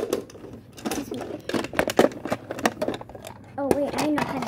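Hard plastic toys being handled: a rapid, irregular run of clicks and knocks as the pieces are picked up, bumped together and set down.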